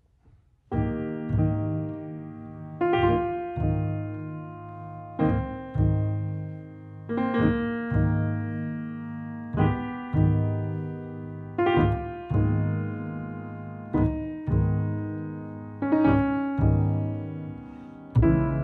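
Grand piano playing slow jazz-ballad chords, each struck and left to ring, a new chord every second or two. It comes in about a second in.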